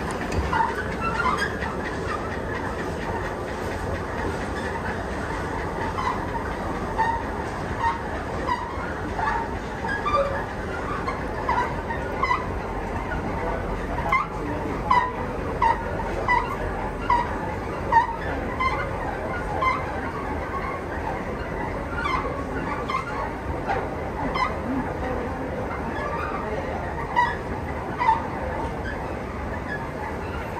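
Kone inclined travelator running while being ridden: a steady low rumble with frequent short squeaks and clicks, irregular, about one or two a second.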